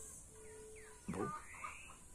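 Faint garden ambience: a steady high-pitched insect drone, with a few short rising whistled animal calls in the second half and a brief low voice-like sound just after a second in.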